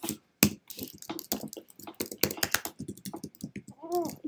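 Typing on a computer keyboard: a quick, uneven run of keystroke clicks, several a second.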